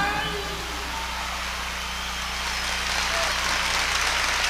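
Concert audience applauding just after a song ends, with a steady low hum from the sound system underneath.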